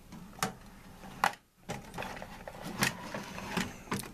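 A metal tool chest being handled as its lower drawer is opened: about four sharp clicks and knocks with tools rattling between them.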